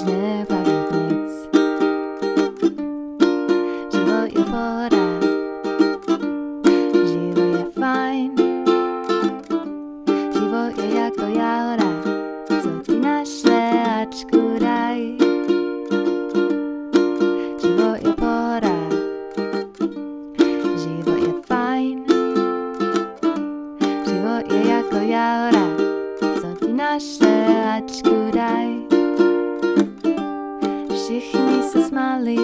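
Kamoa ukulele strummed in a steady rhythm, playing bright chords in a small room.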